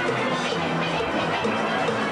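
Live band music with a steady beat: repeating bright chord notes over a moving bass line.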